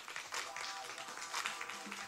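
Background music with a dense run of camera shutter clicks going off throughout.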